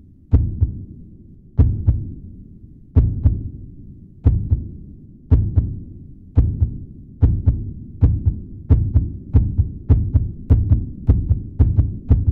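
Heartbeat sound effect: deep double thumps that speed up steadily, from about one beat every second and a half to roughly two a second by the end.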